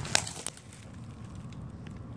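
A few sharp crackles of dry leaf litter and twigs underfoot in the first half second, then a steady low rumble.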